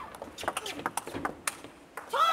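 Table tennis rally: the celluloid ball clicking sharply off the bats and the table in a quick series, about three strikes a second.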